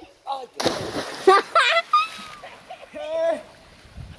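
A person jumping into a river, the body hitting the water with a loud splash about half a second in, then water churning for a second or so. Voices cry out over and after the splash.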